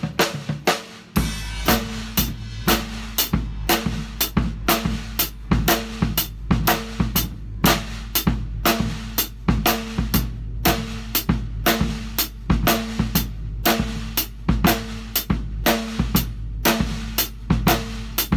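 Drum kit playing a steady rock groove, with hi-hat quarter notes and a snare backbeat on two and four. The bass drum steps through the partials of eighth-note triplets (a triplet grid), and in the single-accent part it sets up a three-against-four hemiola.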